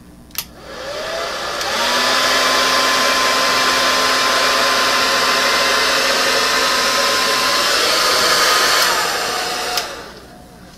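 Hair dryer fitted with a nozzle attachment, switched on with a click, its motor whine rising in pitch to a steady rush of air that blows wet acrylic paint across a canvas. It runs steadily for about seven seconds, then falls in pitch and is switched off with a click near the end.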